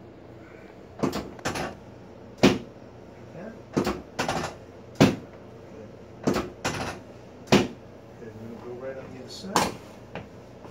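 Sections of a chiropractic drop table dropping under the chiropractor's thrusts: about ten sharp clunks, irregularly spaced, roughly one a second.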